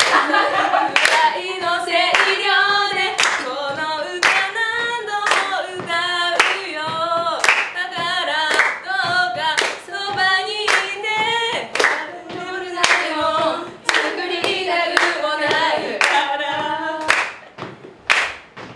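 Young women singing a Japanese pop song unaccompanied, with hand claps keeping a steady beat under the voices.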